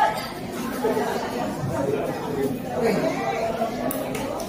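Guests chattering, several voices talking over one another in a large hall.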